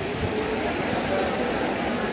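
Steady rush of the Ganges river's current, with faint distant voices.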